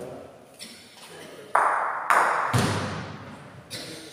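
Bocce balls striking on an indoor court: two loud, sharp knocks about half a second apart, some one and a half seconds in, each ringing briefly, then a lighter knock near the end.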